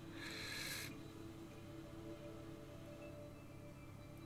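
Quiet room tone with a faint steady hum, and a short soft hiss in the first second.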